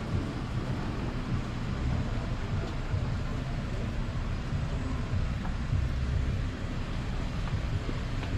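Steady low rumble of outdoor street background noise, with no distinct event standing out.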